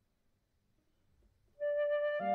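Near silence for about a second and a half, then a concert flute comes in with a single held note near the end.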